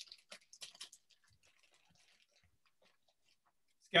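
Faint rustling and light clicks from a bag of wooden blocks and kit pieces being handled, lasting about a second before fading out.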